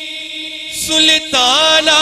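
A man's solo naat singing through a microphone: a held note dies away into the hall's echo, then about a second in he starts a new phrase that slides up in pitch and settles on a long note.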